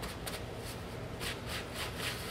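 Faint, irregular rubbing strokes, a few a second: wet black paint being wiped off a silver-foil-covered panel, over a low room hum.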